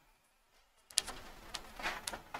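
A sharp click about a second in, then a few short rustles from a person shifting in a chair close to a clip-on microphone.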